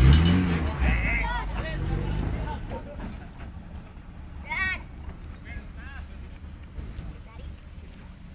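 Off-road jeep's engine revving hard under load, loudest at the start and dying away over about three seconds, with people shouting briefly over it.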